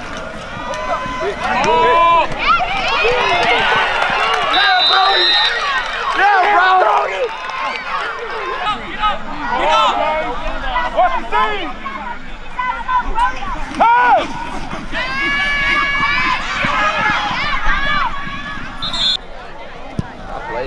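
Many overlapping shouting voices of players, coaches and onlookers at a football game, with no clear words. A short high whistle blast sounds about five seconds in, and another comes just before the end.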